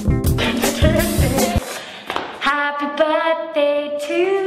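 A song with a steady beat stops abruptly about one and a half seconds in. About a second later a red plastic party horn is blown, holding one long steady note to the end.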